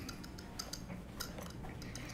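A few faint, irregular clicks and ticks over quiet room noise.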